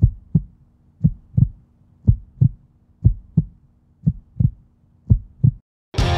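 Heartbeat sound effect: paired low thumps, lub-dub, about once a second, six beats in all, over a faint steady hum. The beats stop about half a second before the end.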